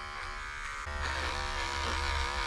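Cordless Wahl pet clipper running with a steady electric hum as it trims the fur around a dog's paw. The hum grows a little louder about a second in.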